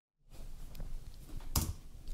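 Quiet room tone after a split second of dead silence, with one brief sharp click about one and a half seconds in.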